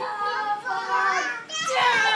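Young children's high-pitched voices calling out in play, one long drawn-out cry, a short break about one and a half seconds in, then another cry starting.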